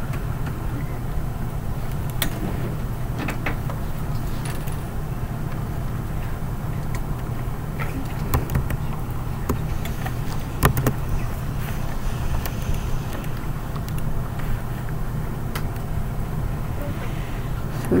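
Steady low hum of room background noise, with scattered faint clicks and knocks.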